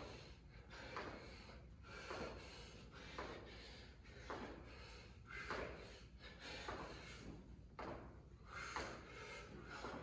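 Faint thuds and hard breaths about once a second from a person doing side punches with jumps on a hard floor.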